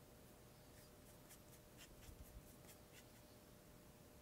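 Near silence with faint, irregular scratchy strokes of a flat paintbrush working acrylic paint onto a canvas panel.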